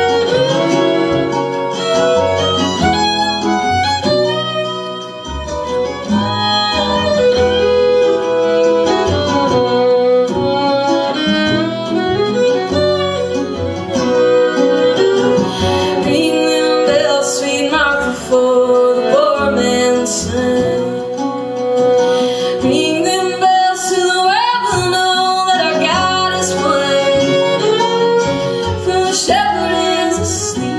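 Live acoustic string trio playing an instrumental break: a fiddle carrying the melody over strummed acoustic guitar and bowed cello.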